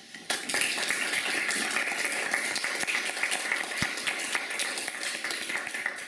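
Audience applauding, a dense patter of many hands clapping that starts abruptly just after the opening and dies away near the end.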